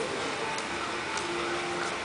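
Steady background room noise in an open hall, with a few faint clicks and brief faint tones.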